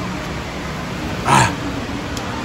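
A short, loud shouted "Ah!" about a second and a half in, over steady background noise.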